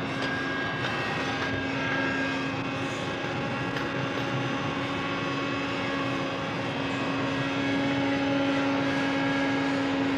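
Vacuum cleaner running steadily, a constant motor hum over a broad rushing noise.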